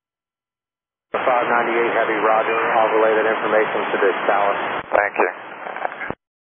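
Air traffic control radio exchange: a narrow-band voice transmission starts about a second in, after complete silence, with a short break near the end before a brief reply.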